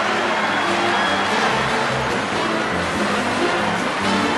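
A large audience laughing and applauding, with an orchestra playing underneath.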